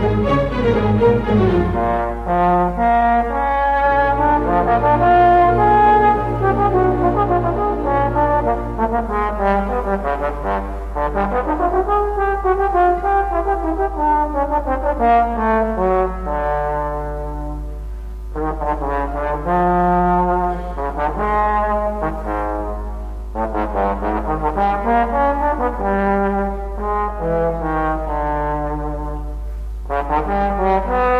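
Solo trombone playing a lyrical line of long sustained notes in phrases, with a string orchestra accompanying underneath; brief pauses between phrases come a little past halfway.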